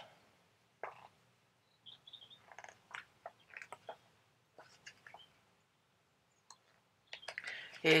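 Faint, scattered clicks and rustles of paper and cardboard packaging being handled by hand while a small printed user manual is sorted out of a mouse box.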